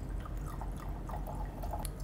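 Wine being poured from a bottle into a stemmed wine glass: a faint trickling and dripping, over a steady low hum.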